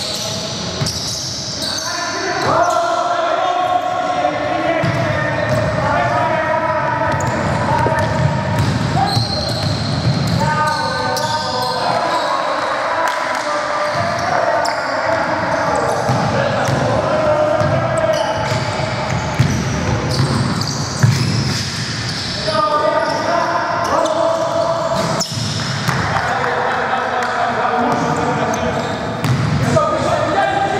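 Basketball game in a large gym: the ball bouncing on the hardwood floor during play, with players' shouted calls, echoing in the hall.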